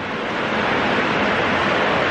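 Heavy rain pouring down, heard from inside a barn as a loud, steady hiss that swells slightly after the start.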